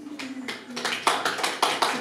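Applause from a small audience in a small room: a few people clapping irregularly, starting just after the child's song ends.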